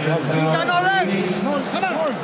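A man talking, with no other sound standing out.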